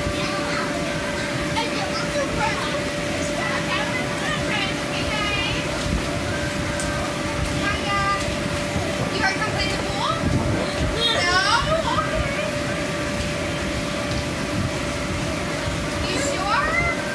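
Children's voices calling out and squealing over the steady drone and hum of an inflatable bounce house's air blower.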